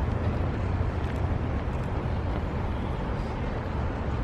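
Outdoor city ambience: a steady low rumble with an even hiss over it, and no single sound standing out.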